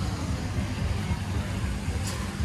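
Wind buffeting the camera's microphone outdoors: a steady, fluttering low rumble with a light hiss.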